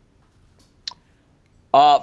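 Near silence, broken by one short click about a second in; a man starts speaking near the end.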